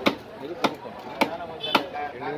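A heavy cleaver-like fish knife chopping fish pieces on a wooden chopping block, four sharp chops about half a second apart.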